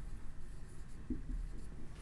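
Marker writing a word on a whiteboard, faint.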